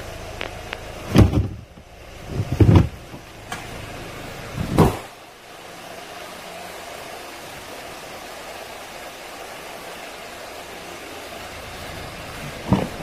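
Three heavy thumps in the first five seconds as the cargo floor board is let down over the spare wheel and the Hyundai Tucson's tailgate is shut, followed by a steady hum of the engine idling.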